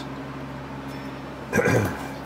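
A steady low hum in the background, then a man clears his throat once, about one and a half seconds in.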